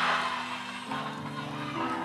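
Soft held keyboard chords playing under a pause in the preaching, moving to a new chord about a second in and again near the end.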